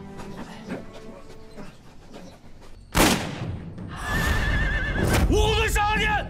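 Quiet at first, then a sudden loud hit about halfway through that fades off. After it comes a high wavering cry and a series of rising-and-falling shouted calls, with music underneath.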